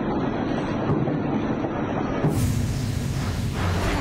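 Fireworks going off around an apartment block, heard as a continuous rumbling crackle on a phone microphone. About two seconds in there is a loud hissing rush that lasts over a second.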